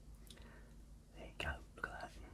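A man whispering under his breath in two short bursts in the second half.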